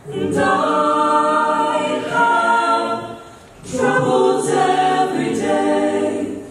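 Mixed-voice a cappella group singing sustained chords in close harmony into handheld microphones, in two phrases with a short break a little past the middle.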